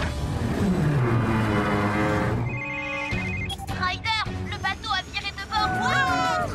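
Cartoon soundtrack: music under a noisy sound effect with a falling pitch, then a brief fast ringing trill a little before halfway. Squeaky, wordless cartoon vocal sounds fill the second half.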